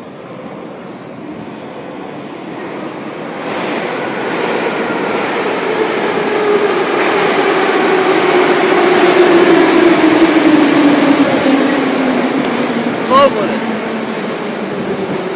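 Metro train pulling into the station, growing louder over several seconds as it nears, its motor whine falling steadily in pitch as it slows. A short, loud squeal comes near the end.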